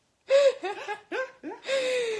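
One person laughing: a quick string of short high-pitched bursts, then a longer drawn-out laugh near the end.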